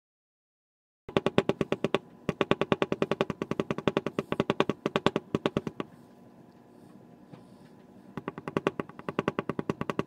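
Rapid mallet taps on a metal leather-tooling beveler held on damp leather, about seven strikes a second, beveling the traced lines of a design. The tapping starts about a second in, stops for about two seconds near the middle, and then resumes.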